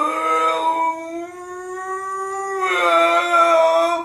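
An adult's drawn-out mock-crying wail: one long, unbroken howl held at a steady pitch, growing louder in its last second or so.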